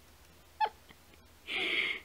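A domestic cat vocalizing: a brief, thin sound about half a second in, then a louder call lasting about half a second near the end.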